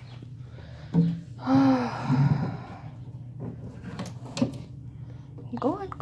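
A young person's brief wordless vocal sounds with a rising-and-falling pitch, then two light knocks as the bark hide and water bowl in a glass snake enclosure are moved by hand, over a steady low hum.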